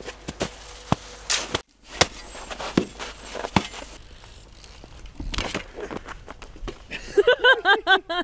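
Metal snow shovels scraping and chopping into packed snow, then a BMX bike rolling on asphalt with a heavy thump about five seconds in as the rider falls. A burst of laughter near the end.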